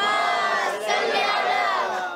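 A congregation reciting the salawat aloud together, the many voices chanting in unison in two drawn-out phrases with a brief break a little under a second in.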